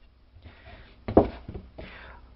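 Wooden boards knocking together as they are handled on a plywood workbench: one sharp knock about a second in, then a couple of lighter taps.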